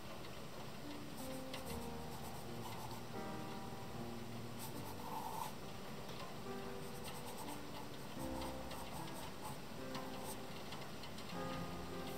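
Coloured pencil strokes scratching on sketchbook paper in short, irregular bursts, over background music.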